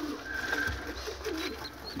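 Domestic pigeons cooing, low and wavering.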